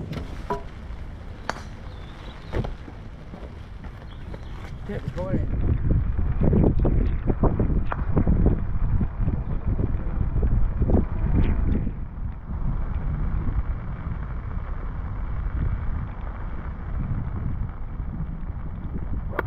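Wind buffeting the microphone: a low rumble that gusts harder for several seconds in the middle.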